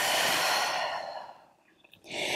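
A woman's long, breathy open-mouth exhale, a sigh out, that fades away about one and a half seconds in.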